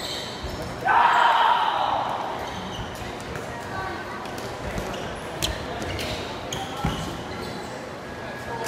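Players kicking a shuttlecock and moving on a sports-hall floor during a rally: scattered knocks and thuds, with a loud shout about a second in and voices around the court.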